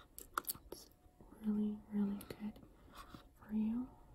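A woman's soft whispered, murmuring voice in short held syllables, with a few light clicks in the first second.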